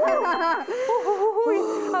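Women singing the last line of a children's action song, with a brief high ringing tone near the start. A held sung note gives way to an exclaimed 'uy' near the end.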